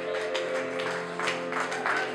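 Live swing band playing held chords with guitar and upright bass, under scattered audience applause.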